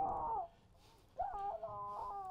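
A person's drawn-out whimpering moans, twice, in distress: one fading about half a second in, another starting just past the first second.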